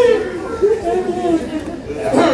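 Indistinct voices talking, chatter from audience members in a small club, with no clear words.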